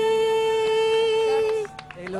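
A woman's voice holding one long sung note at the end of a song, steady with a slight waver, cutting off about one and a half seconds in.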